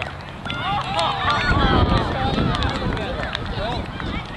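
Several high voices calling out and chattering at once, overlapping so that no words come through, with a low rumble swelling briefly in the middle.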